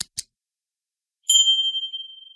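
Subscribe-animation sound effects: a quick double mouse click, then about a second later a bright notification-bell ding that rings on and fades slowly.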